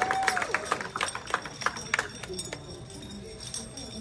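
Scattered applause from an audience, many separate claps that thin out and die away about two and a half seconds in, over low crowd chatter.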